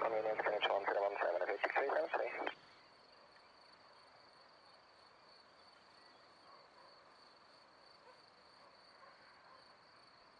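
Air-band radio voice transmission, narrow and tinny, that cuts off suddenly about two and a half seconds in. It is followed by a faint, steady, high-pitched chirring of insects.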